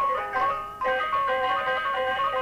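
A Balinese gong kebyar gamelan ensemble plays fast, interlocking figures on its bronze metallophones. The sound thins and dips just under a second in, then cuts sharply back in at full level as the next piece starts.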